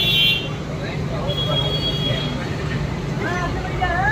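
A steady low mechanical drone with indistinct crowd voices behind it. A high tone cuts off just after the start, and a faint thin whistle-like tone sounds between about one and two seconds in.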